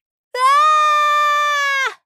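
One long, high-pitched wailing cry held at a nearly steady pitch for about a second and a half. It starts about a third of a second in and stops shortly before the narration resumes.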